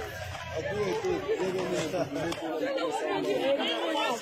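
Several people talking over one another: a steady hubbub of overlapping voices, with no single clear speaker.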